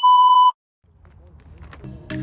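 A loud, steady test-tone beep of the kind played with TV colour bars, lasting about half a second and cutting off abruptly. After a moment of dead silence, faint outdoor ambience fades in.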